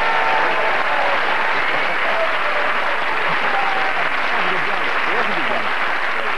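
Studio audience applauding steadily, with some voices over the clapping.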